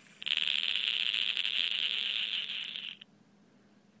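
Aluminium-foil brushes of a homemade electrostatic motor rattling rapidly against the aluminium-tape elements of its spinning rotor. The rattle is fast and even, starts abruptly, and cuts off suddenly after about three seconds as the motor is stopped.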